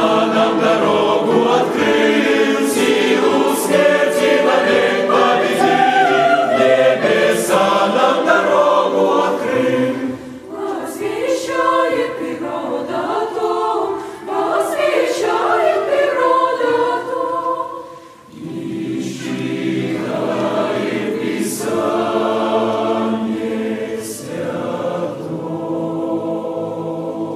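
Large mixed choir of men's and women's voices singing a hymn, with brief pauses between phrases about ten and eighteen seconds in.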